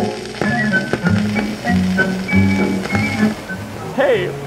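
Background music: a simple tune of held notes stepping from one pitch to the next, with no voices.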